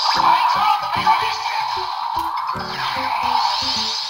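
Electronic sound-effect jingle with a rhythmic beat, played through the built-in speaker of a BIKLONZ Megabeast Cross Attacker transforming robot toy. It includes a falling sweep about three seconds in and fades out near the end.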